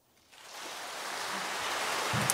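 Audience applause in a concert hall, starting about a third of a second in and growing steadily louder.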